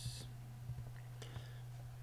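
Low steady hum with a short hiss at the very start and a faint tick a little past one second in.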